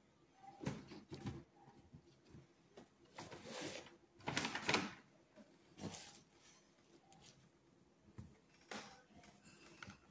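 Hair being handled close to the phone's microphone: a few irregular rustles and brushes, loudest about three to five seconds in.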